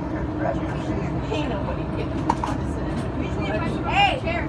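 Steady low rumble of a moving passenger train heard from inside the car, with people's voices talking in the background and a voice coming in near the end.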